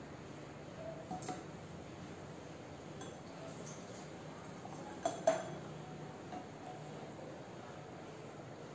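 Small bottles and a glass container clinking and tapping against a glass tabletop as they are handled: a couple of faint taps about a second in and two sharper clinks with a short ring around five seconds in, over quiet room tone.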